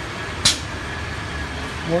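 PVC fittings grooving machine: one short, sharp click-hiss about half a second in as its water and air cooling cycle is switched on, over a steady machine noise with a faint high steady tone.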